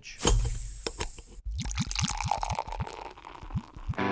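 Beer opened with a loud fizzing hiss, then poured in a run of quick glugs that rise in pitch as the glass fills.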